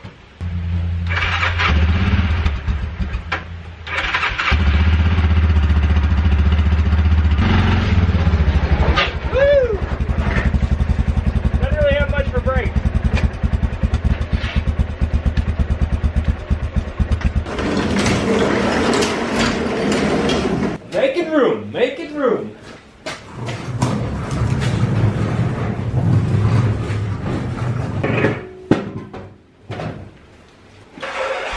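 A four-wheeler's engine starting right at the outset and running, with a brief dip about four seconds in, then idling and revving on and off.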